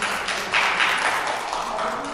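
Applause: a steady patter of many hand claps.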